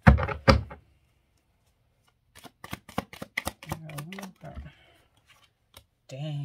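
Tarot cards being handled and shuffled: a flurry of card noise in the first second, then a quick run of sharp card clicks about two and a half seconds in, with a few more clicks near the end.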